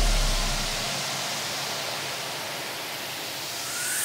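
A break in an electronic dance track: a low bass note fades out within the first second, leaving a hissing noise sweep that swells again toward the end with a faint rising tone.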